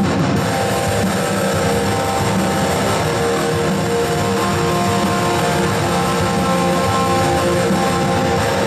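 Electric guitar played live and amplified: a steady, continuous stream of chords and sustained notes.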